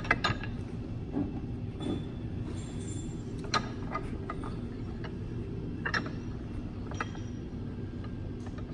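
Scattered sharp metallic clicks and clinks from a hand-lever arbor press and the metal wheel hub being positioned under its ram, over a steady low hum.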